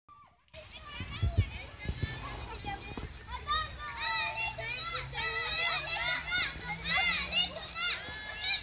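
Children shouting and calling out in high voices, several at once, growing busier from about three and a half seconds in. A couple of dull low thumps come in the first two seconds.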